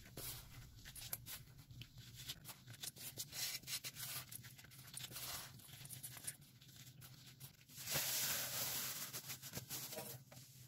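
Dried cleaning-powder paste being crushed and crumbled by a gloved hand: scattered small crackles and crunches, with a steadier hissing stretch of about two seconds near the end.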